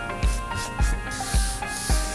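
A hand rubbing and sliding across a sheet of chart paper on the table, with a brief scraping hiss near the end. Background music with a steady beat of about two thumps a second plays under it.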